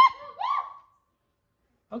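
A person laughing and whooping: two quick rising, hoot-like cries in the first second.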